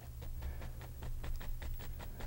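Oil-loaded two-inch bristle brush dabbing against the canvas: a quick, irregular run of soft taps as highlights are put on trees and bushes, over a faint steady low hum.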